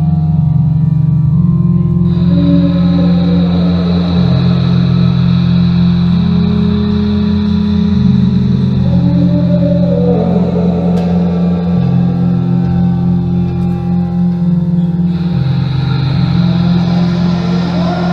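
Live experimental electronic music: synthesizer drones whose low notes step in pitch every couple of seconds, under a wavering, sliding bowed violin line, with a high steady tone coming in about two seconds in.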